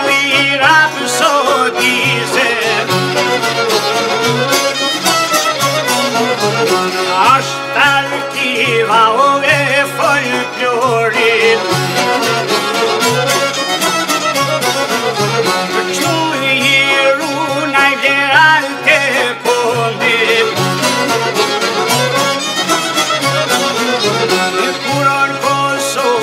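Instrumental Albanian folk music: a violin plays the wavering melody over a plucked long-necked Albanian lute, with accordion and frame drum keeping a steady beat underneath.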